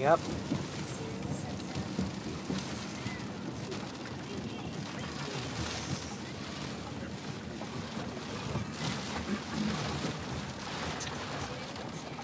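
Inside a car moving on wet roads in the rain: a steady rumble of engine and tyres on wet pavement, with rain hitting the car.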